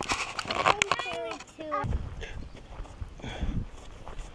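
A young child's brief wordless vocal sounds with a few sharp clicks and knocks, then low, soft thumps like footsteps.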